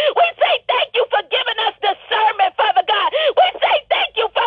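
A high-pitched voice praying fast and fervently with no clear pauses, heard thin and narrow through a telephone line.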